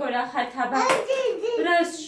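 A woman talking to a toddler, with one sharp smack about a second in.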